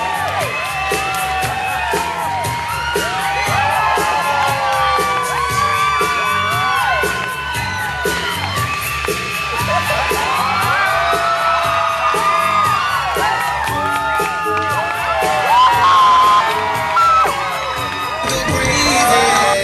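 Music with a steady beat, with an audience cheering, whooping and shouting over it throughout.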